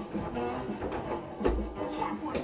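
Music from a television playing in the background, quieter than the reading voice around it, with a low thump about one and a half seconds in.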